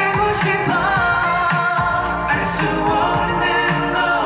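K-pop dance-pop song playing loud, with a male vocal line sung over a steady beat.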